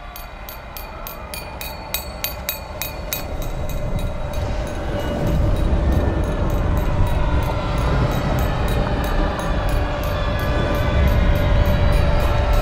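A fork tapping on a wine glass again and again, about four light taps a second, an impatient guest's signal to be served. Under it, music with a low rumble rises steadily in level from a few seconds in.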